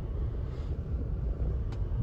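Low, steady rumble of a Range Rover Evoque's 2.0 TD4 four-cylinder turbodiesel idling, heard from inside the cabin, with a single click near the end.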